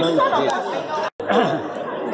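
Several people talking at once: overlapping conversation and chatter, broken by a brief dropout a little past halfway.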